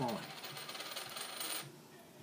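Two metal forks and a quarter clinking and scraping as the coin is worked in between the interlocked fork tines; the rattle stops suddenly after about a second and a half.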